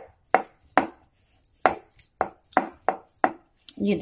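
Wooden rolling pin (belan) and round wooden board knocking in a string of short, sharp clacks, about two a second at an uneven pace, as a stuffed paratha is rolled out with a light hand.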